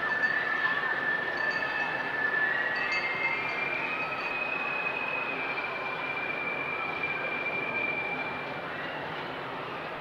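Recorded ambience opening a music track: a steady noisy rumble with high squealing tones that drift slowly in pitch, easing off a little near the end.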